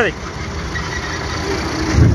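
Steady engine and road rumble heard from inside a moving vehicle, with a low thump near the end.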